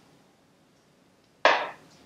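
Quiet, then about one and a half seconds in a single sharp knock that fades quickly: an aluminium beer can set down on the wooden floor after a sip.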